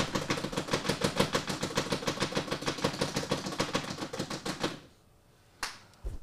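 Hand clapping in a quick, even run of about ten claps a second, stopping near the end.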